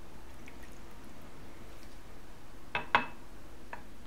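Water poured from a drinking glass into a silicone steam case, with faint trickling and dripping. A few sharp glass knocks follow, the loudest about three seconds in.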